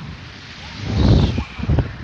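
Wind buffeting a phone's microphone in a gust that swells about a second in and then eases.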